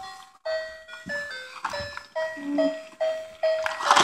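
Battery-powered toy animal train playing a simple electronic tune, one clear note every third to half second, as it runs along its track.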